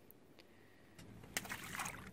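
A released fish dropping back into the lake beside the boat, with a short splash about a second and a half in.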